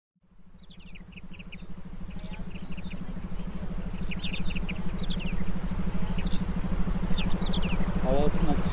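Meditation background track fading in: a steady, rapidly pulsing low hum under a soft noise bed, with repeated short, falling bird chirps above it.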